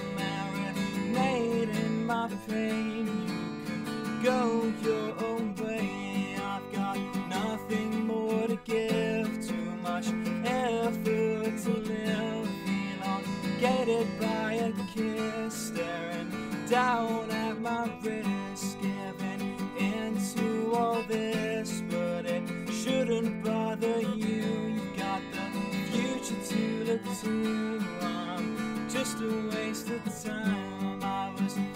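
Steel-string acoustic guitar strummed in a steady rhythm, with a male voice singing over it.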